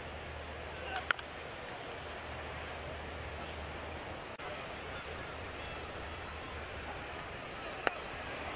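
Steady murmur of a ballpark crowd with a low hum. About a second in there is a single sharp crack as the bat fouls a slider straight down into the dirt. Just before the end comes another sharp pop as the next pitch is delivered and swung at.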